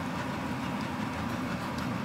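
Steady low rumbling noise with no sharp knocks.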